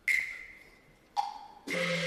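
Cantonese opera accompaniment: a sharp percussion strike that rings briefly at the start, a second, lower-pitched strike a little over a second in, then the instrumental ensemble comes in near the end.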